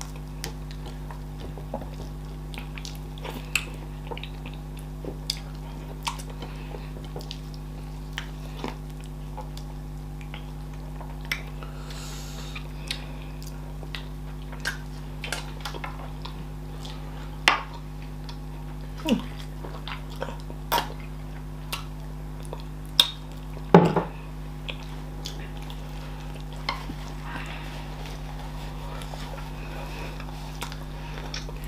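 Close-miked eating sounds of two people eating fufu and chicken in okra soup by hand: scattered wet chewing smacks and clicks, with a couple of louder smacks near the end, over a steady low hum.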